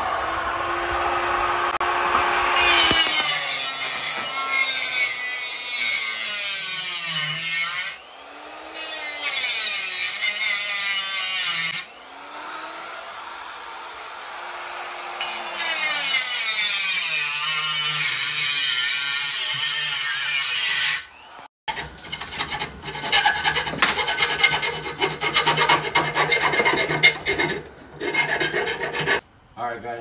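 Angle grinder cutting into the steel spring perch of a strut clamped in a vise, trimming it so an air bag will fit. Its motor pitch sags under load and climbs again as the disc is eased off, over several passes with short lulls between; after about twenty seconds the sound turns rougher and choppier.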